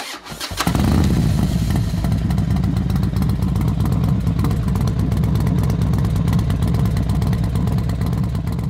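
Triumph Rocket 3R motorcycle's 2.5-litre three-cylinder engine starting: a brief crank, catching about half a second in, then idling steadily with a deep, fast-pulsing rumble.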